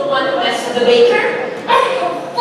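Actors' voices calling out loudly on stage, in short bursts, with a fresh loud call starting near the end.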